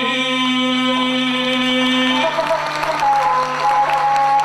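Gusle, a single-string bowed folk fiddle, played beneath a male epic singer's long held note. About halfway through the held note ends and the gusle carries on alone with a scratchy, shifting bowed line.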